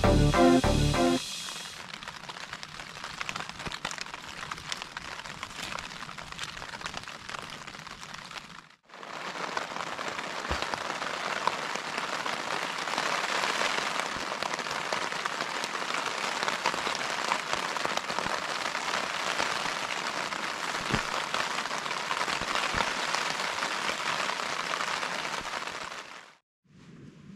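Rain falling on a tent's fabric, heard from inside the tent as a steady patter of fine drops. It breaks off briefly about nine seconds in and comes back louder. Music ends about a second in.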